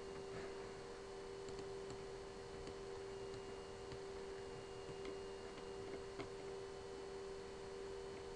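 Faint room tone on an open video-call line: a steady low hum with a few faint ticks, one a little after six seconds in.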